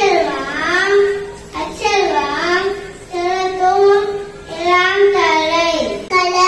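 A young child's voice chanting verse in a sing-song melody, with long held notes in several phrases separated by short breaths.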